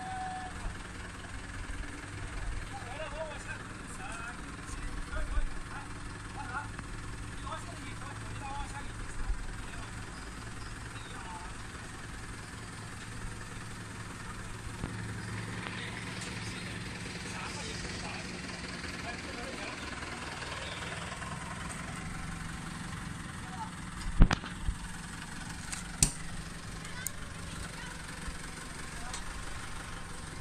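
An engine running steadily at idle, with faint voices in the first part. Two sharp clicks stand out near the end.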